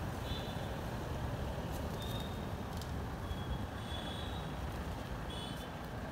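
Steady low rumble of street traffic, with a few short high chirps scattered through it.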